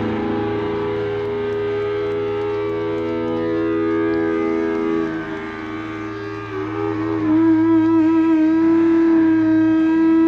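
Live band music from electric guitars holding sustained, droning notes. About halfway through the sound dips, then one held note swells louder and wavers slightly.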